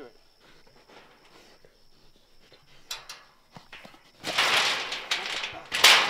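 Wire hog trap rattling and scraping as its stuck door is worked open with a live hog inside. It is quiet at first, breaks into a loud clatter about four seconds in, and gives a second sharp clatter near the end.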